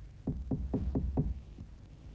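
Rapid knocking on a wooden door: a run of about five quick knocks, a few per second, over a low soundtrack hum.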